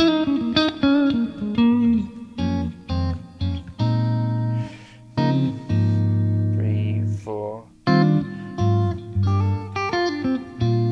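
Electric guitar, a Stratocaster-style solid-body, playing a chord vamp: each chord is struck and left to ring, with short gaps between them. A short sliding note comes a little past halfway.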